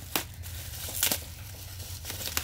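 Clear plastic wrapping crinkling as it is handled in the hands, with two sharper crackles, one right at the start and one about a second in.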